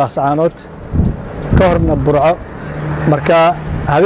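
A man speaking in short phrases over the low noise of a car on the road, with a single low thump about a second in.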